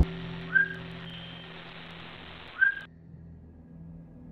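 Two short whistle-like chirps, about two seconds apart, each rising quickly and then holding one pitch, over faint hiss and a low steady hum. The hiss cuts off suddenly about three seconds in.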